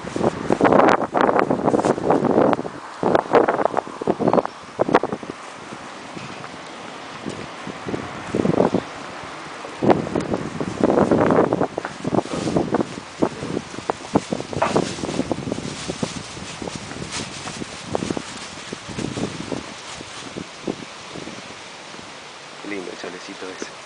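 Wind buffeting the microphone of a handheld camera in irregular gusts, heaviest in the first few seconds and again about ten seconds in, with scattered light clicks.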